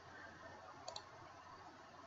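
A single computer mouse click about a second in, against near silence.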